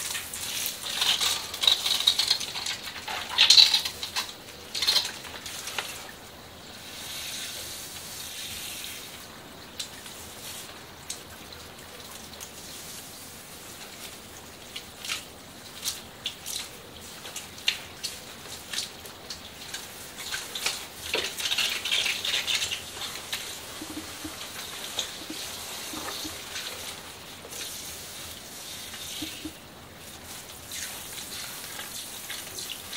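Water from a handheld shower sprayer running over shampoo-lathered hair and splashing into a salon shampoo basin, with hands working through the wet, foamy hair. It comes in uneven splashes and drips, loudest in the first few seconds and again about twenty seconds in.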